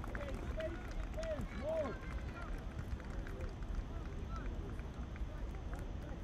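Distant shouts from youth soccer players on an open field just after a goal, a few short calls in the first two seconds, over a steady low rumble of outdoor ambience.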